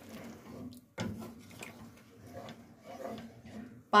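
Wooden spoon stirring boiled chickpeas in a pan of thin spiced liquid, with faint scrapes and soft knocks against the pan that come in suddenly about a second in.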